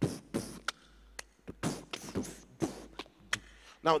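A man beatboxing a drum pattern into a handheld microphone, imitating a kick drum with a string of short percussive mouth bursts and clicks at an uneven rhythm.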